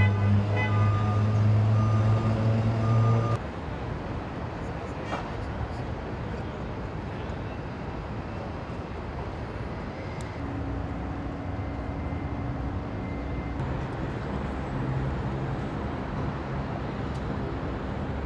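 Outdoor traffic noise with a vehicle engine's low hum and a repeating beep for about the first three seconds, both cutting off suddenly. Steady road and street noise follows, with faint engine tones coming and going.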